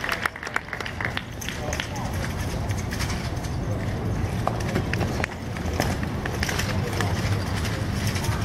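Scattered sharp clicks and slaps of drill rifles with steel bayonets being handled, spun and caught by a drill team. They sound over a steady low rumble and background voices.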